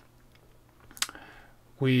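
A single sharp click about a second in, with a faint hiss just after it, over quiet room tone; a spoken word begins near the end.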